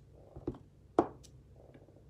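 Clear acrylic stamp block being set down and pressed onto paper over a desk mat: a few light knocks, the sharpest about a second in.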